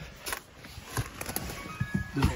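Knocks and rustling as a person climbs into a car's driver's seat. In the second half there are a few faint, thin, steady electronic tones.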